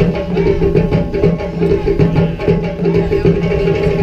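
Music with drums and a plucked-string part, playing at a steady, lively pace.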